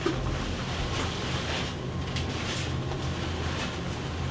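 Faint rustling and handling sounds of someone moving about and picking up a skateboard deck, over a steady low hum.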